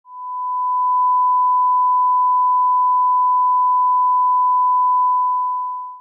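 Steady line-up reference tone at the head of a video master: a single pure pitch that holds level and cuts off at the end.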